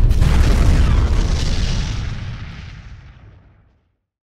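A loud explosion boom that hits all at once with a deep rumble, then dies away over about three and a half seconds.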